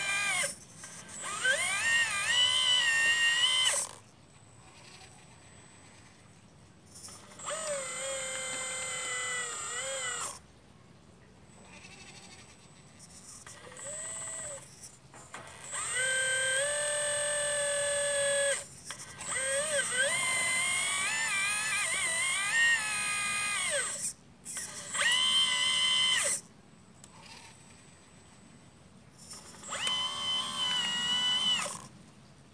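1/12-scale radio-controlled Liebherr 954 excavator's motors whining in repeated bursts a few seconds long as the arm digs and swings, stopping in between. The pitch rises and falls with each movement.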